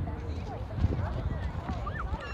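Footsteps crunching and thudding irregularly on packed snow, heard close to the microphone. Distant voices of people out on the frozen lake carry over them.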